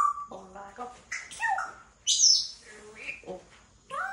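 African grey parrot vocalizing: short whistles and chirps mixed with mumbled, speech-like mimicked phrases. The loudest call is a high falling whistle about two seconds in.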